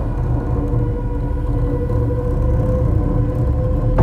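Suspenseful background score: a low rumbling drone under a few long held tones.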